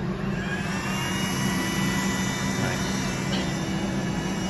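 Small 12-volt DC air induction motor on a Nieco broiler starting up: a thin whine that rises in pitch over about a second, then runs steady over a low hum. This is the newly fitted replacement motor running normally.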